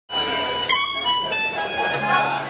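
Harmonica sounding held, reedy chords, broken by short gaps between notes.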